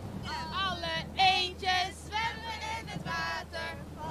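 A woman singing, with held notes and sliding pitch, over a low steady hum.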